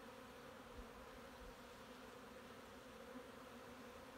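Faint, steady hum of a honeybee colony from an open hive.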